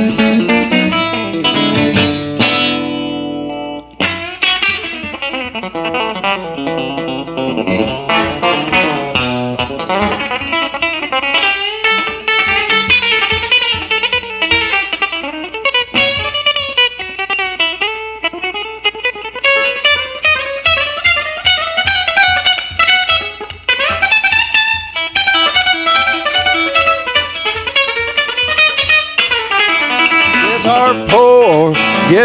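Fender Jaguar electric guitar played through an amplifier: a solo picked country instrumental, with a steady pulse of bass notes under the melody from about twenty seconds in.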